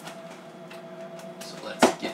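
Hands working at the packing tape on a cardboard box: faint small scratches and rustles, then one short, sharp, loud noise near the end.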